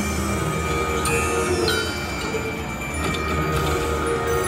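Willy Wonka video slot machine playing its bonus-round music and chiming sound effects while the reels spin, with a falling swoosh about a second in.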